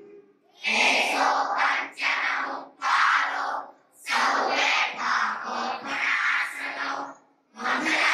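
A group of voices chanting a prayer in unison, in phrases of one to three seconds with short breaks between them.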